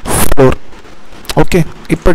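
A man speaking in short, broken fragments, opening with a brief hissy rasp.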